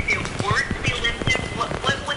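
A voice speaking over a phone line, broken by many short clicks.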